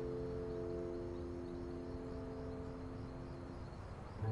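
Soft background music: a sustained keyboard chord that slowly fades away near the end.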